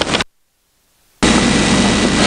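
Steady recording hiss with a low hum that cuts off abruptly a quarter second in, leaving dead silence for about a second, then comes back just as abruptly: an edit splice between two recorded segments.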